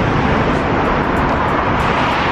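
Loud, steady road traffic noise from a busy street.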